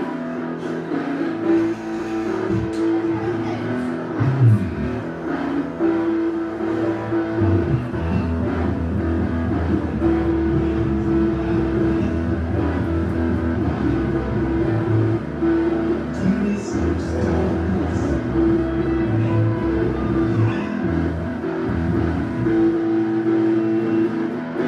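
A band's electric guitars and bass guitar playing through amplifiers in a loose warm-up rather than a set song, with a note held again and again. Heavy bass comes in about eight seconds in and drops out near the end.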